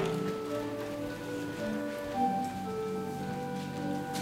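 Church organ playing slow, sustained chords, each note held and the harmony shifting every second or so.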